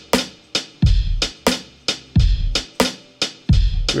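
A programmed drum-machine loop at a slow hip-hop tempo: a deep kick with a short low tail on beats one and three, and a snare on two and four. Further short percussion hits fall between them.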